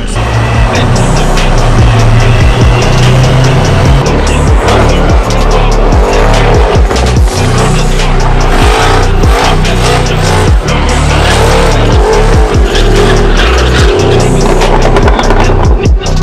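A drift car's engine running at high revs with its rear tyres squealing in a sustained slide, mixed with music.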